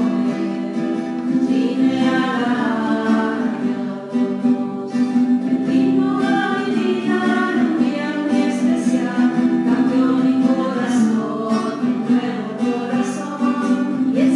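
Voices singing a hymn with guitar accompaniment: the entrance hymn as the celebrant is received at the start of Mass.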